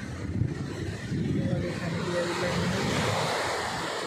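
Surf breaking and washing up a sand beach, with wind buffeting the microphone. It gets louder about a second in.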